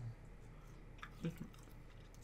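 Faint mouth sounds of a person chewing a soft fruit-roll candy strip: a few small wet clicks and smacks about a second in, with a brief low grunt among them.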